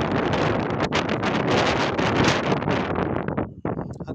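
Wind buffeting the microphone in strong, uneven gusts, dropping away briefly just before the end.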